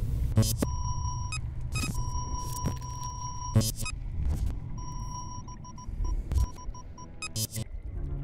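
Sci-fi computer-interface sound effects over a low rumble: electronic beeps at one pitch, first a short one, then a tone held about a second and a half, then a run of quick stuttering beeps near the end, broken by several sharp glitchy clicks.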